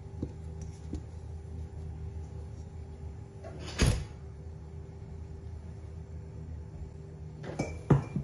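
A lump of soft yeast dough dropping out of a stainless steel pot into a glass bowl, landing with a single dull thud about four seconds in, followed by a few light knocks near the end.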